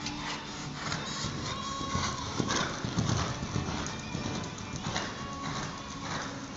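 Background music playing, with a horse's hoofbeats on the arena footing.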